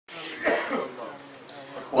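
A man coughing and clearing his throat about half a second in. A chanted reciting voice starts right at the end.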